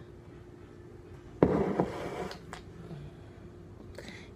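A glass syrup bottle set down by hand: a sudden clatter about a second and a half in that lasts under a second, then a single click a little later.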